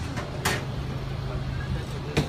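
A single sharp crack of a golf club striking a ball about half a second in, over a steady low hum.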